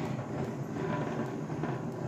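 Hand-cranked plastic yarn ball winder being turned steadily: a continuous mechanical whirr as the spindle spins, winding yarn into a cake.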